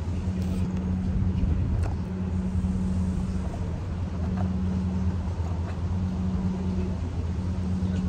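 Steady low mechanical hum, even in pitch, with light background noise and a faint click or two.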